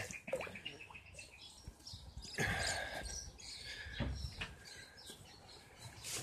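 Faint bird chirping against a quiet outdoor background, with a short burst of noise about two and a half seconds in.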